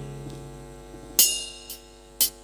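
A Korg keyboard through a PA speaker: a held chord dies away over a steady mains hum, then a sharp drum hit about a second in and a lighter one just after, as the keyboard's drum pattern starts.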